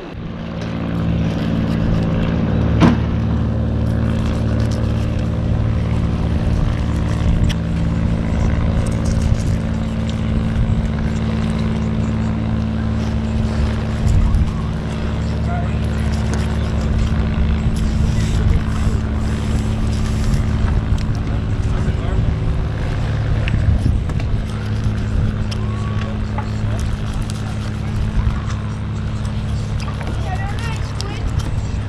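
A steady low motor drone made of several even pitches, running at a constant speed, with a single sharp knock about three seconds in.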